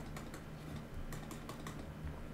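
Stylus tip clicking and tapping on a tablet screen in quick, irregular strokes as words are handwritten, over a low steady hum.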